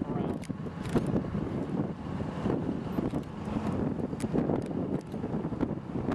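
Wind gusting and buffeting the microphone, with road traffic passing close by: a rough, rushing noise broken by many short knocks and pops.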